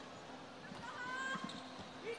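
Faint indoor arena ambience: a low murmur of distant crowd voices, with a faint distant voice or call about halfway through.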